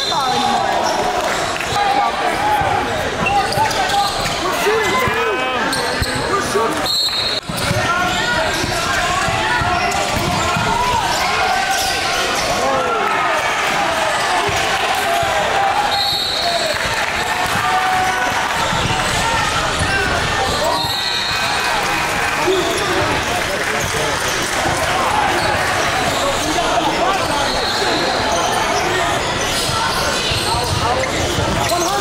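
Basketball game sound echoing in a gymnasium: a ball bouncing on the hardwood court amid players' and spectators' voices, with a few short high squeals through it.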